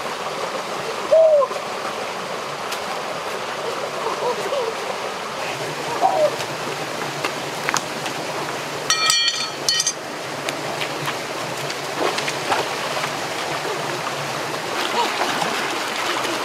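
Shallow rocky stream and small waterfall running steadily, with a few short high sounds over the flow and a brief buzzy sound about nine seconds in.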